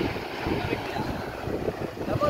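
Wind rumbling on the microphone, with faint voices in the background.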